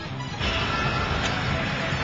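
Cartoon soundtrack: background score under a steady rushing noise effect that comes in about half a second in, with one brief click near the middle.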